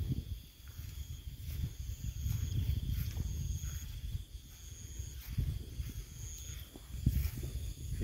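Low, uneven rumble of the phone's microphone being carried and moved about, with faint insects in the background: a steady high drone and a few short high chirps about once a second.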